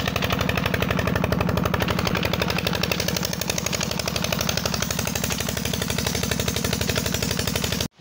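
Diesel engine running steadily close by, with a fast, even knocking beat. The sound cuts off abruptly just before the end.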